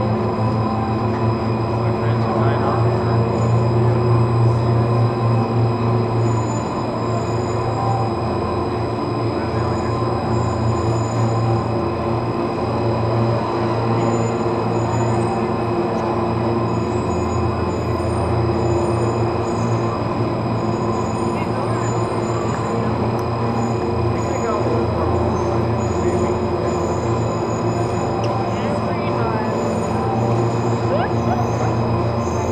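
Station machinery of a Leitner 3S gondola lift running as a cabin moves slowly through the station: a constant low drone with several steady whining tones above it.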